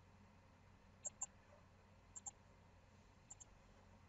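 Computer mouse button clicking three times, about a second apart, each click a quick pair of sharp ticks over a faint background.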